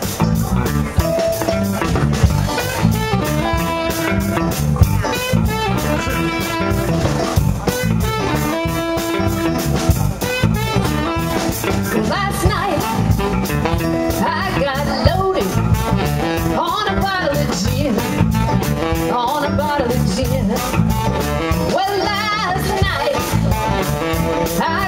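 Live band playing amplified electric guitars, keyboard and drum kit with a steady beat. A woman sings over it in the second half.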